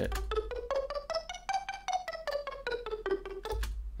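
A Native Instruments Massive synth pluck arpeggio, playing eighth notes up and then back down the G minor scale at about five notes a second, dry with its delay effect removed. A low steady tone sounds underneath.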